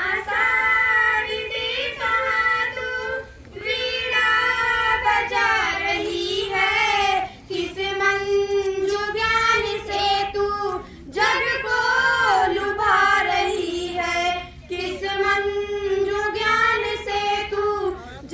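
Two schoolgirls singing a song together into a microphone, unaccompanied. They sing in held, gliding phrases of a few seconds, with brief breaths between them.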